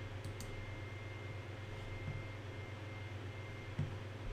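Two quick computer-mouse clicks about a third of a second in, then a single faint tap near the end, over a steady low hum with a faint high whine.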